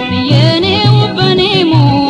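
Ethiopian cassette-era popular song: a sung vocal line that glides and wavers in ornaments, over a bass note pulsing about twice a second.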